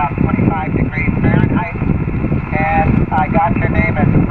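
A man's voice received over single-sideband on a ham radio transceiver's speaker: narrow and tinny, weak but clear, with band hiss and a low rumble underneath.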